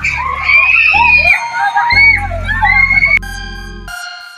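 Loud high-pitched screams from riders on a swinging pirate-ship fairground ride, over background music with a bass beat. About three seconds in, the screams stop and steady electronic keyboard tones take over.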